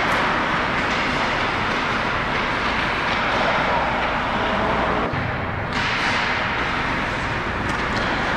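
Ice hockey play right at the goal: a steady scrape of skates on the ice, with a few sharp stick or puck clacks and indistinct players' voices.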